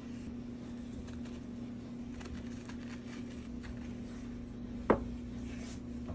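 Low steady hum of room tone, with one short knock about five seconds in.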